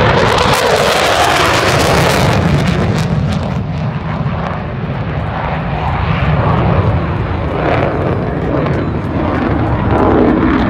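Jet engine noise of an F-15 fighter making a low pass. It is loudest in the first three seconds, with a hissing top, then settles to a steady, lower rumble as the jet climbs away.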